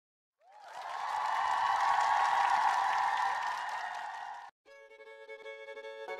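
A dense, noisy swell rises and then cuts off suddenly about four and a half seconds in, and background music with held string-like notes begins just after.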